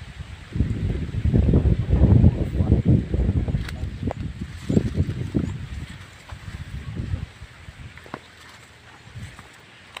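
Irregular low rumbling and knocking on a handheld phone's microphone, loudest in the first few seconds with a few sharper clicks, then dying down after about seven seconds.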